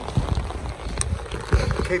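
Rain pattering on an umbrella overhead, with irregular low thumps and a sharp click about a second in.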